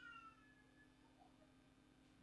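Near silence: room tone with a faint steady hum, as the tail of the last spoken word fades out in the first half-second.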